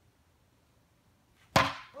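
A single sharp crack about one and a half seconds in: a blue plastic toy bat hitting a pitched ball. An exclamation follows at once.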